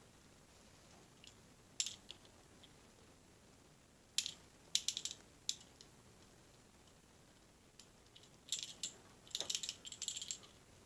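Small clicks and ticks from a 1:64 die-cast metal model car handled in the fingers as its tiny opening hood is worked at to pry it open. A few scattered clicks, then a busier run of clicks and rattles near the end.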